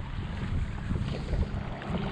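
Wind buffeting the microphone over choppy water lapping against the hull of a moving kayak, a steady rough rushing noise.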